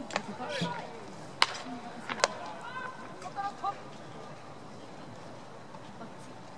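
Two sharp cracks of a baseball hitting leather or wood during infield ground-ball practice, about a second and a half in and again just after two seconds, the first the louder. Murmur of voices in the background.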